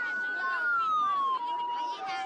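Police patrol car's electronic siren: one long steady tone that slides down in pitch about a second and a half in and settles on a lower steady tone.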